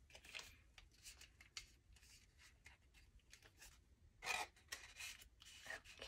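Faint rustling and light clicks of paper banknotes and an envelope being handled as the cash is worked into the envelope, with a louder rustle about four seconds in and another near the end.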